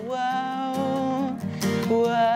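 Teen-pop song with strummed acoustic guitar under one long held sung note, followed near the end by the start of another.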